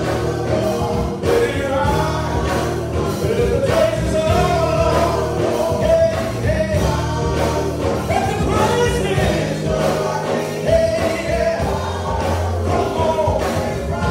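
Gospel singing by a small church praise team over instrumental backing with a steady bass and beat.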